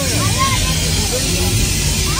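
Faint background voices over a steady low rumble.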